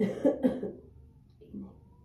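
A woman coughing: two loud coughs in quick succession, then a fainter one about a second and a half in. It is a lingering cough from an illness she is still recovering from.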